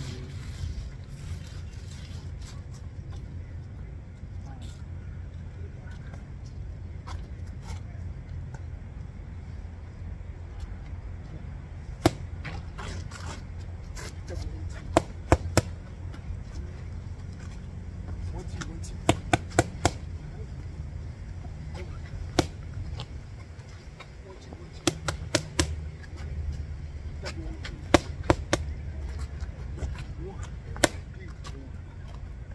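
Boxing gloves hitting red focus mitts: sharp slaps, singly or in quick bursts of two or three, starting about twelve seconds in and coming every few seconds, over a steady low rumble.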